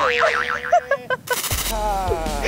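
A comic cartoon 'boing' sound effect: a steady tone with a fast wobbling warble over it for about a second, cut off by a short burst of noise.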